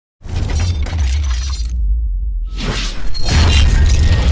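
Cinematic intro sound effects: a heavy, deep bass rumble under a loud crashing, shattering noise. The crash cuts out for under a second midway, leaving only the rumble, then surges back louder.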